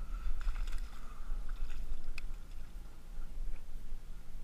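Low rumble and rustling handling noise on the camera mic, with a few small crackles and a sharp click, as a caught bass is let go back into the water at the bank.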